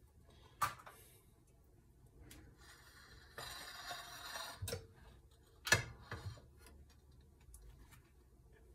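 A few sharp clicks and knocks as a countertop toaster oven's glass door is pulled open, with a short rustle of handling just before.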